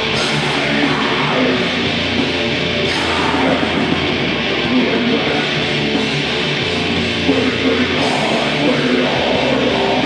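Live heavy metal band playing loud, with distorted electric guitars, bass and drums.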